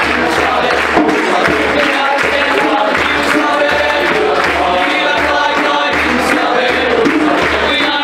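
A youth choir singing, with a pulsing low bass underneath that comes in at the very start.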